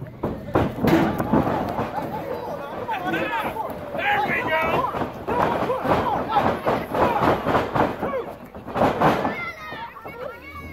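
Spectators shouting and yelling over repeated sharp thuds and slaps of wrestlers' bodies hitting each other and the ring canvas. The loudest impacts come about a second in and again near the end.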